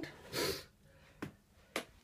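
A clear plastic tub being picked up and handled: a brief soft hiss, then two light clicks about half a second apart.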